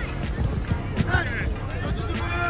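Footballs being kicked and passed on an artificial-turf pitch: repeated short sharp thuds at an uneven pace, with players' shouts and calls over them.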